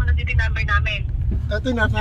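People talking inside a car cabin over the car's steady low rumble.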